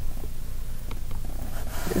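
Room tone with a steady low hum, from a computer microphone in a small room, broken by a couple of faint clicks.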